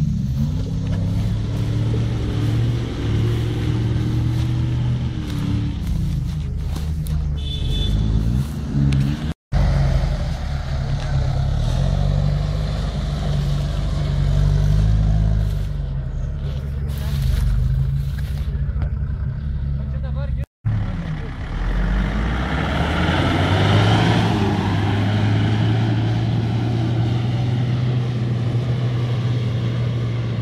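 SUV engines working through deep mud at low speed, the engine note rising and falling as the drivers throttle on and off, with a stronger surge of revving a little past the middle. The sound drops out completely twice for a split second.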